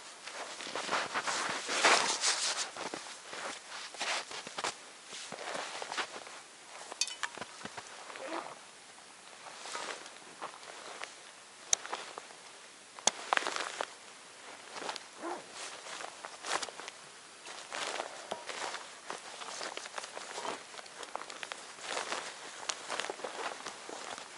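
Rustling of clothing and a backpack being packed, with snow crunching underfoot and a few sharp clicks, the loudest about twelve and thirteen seconds in.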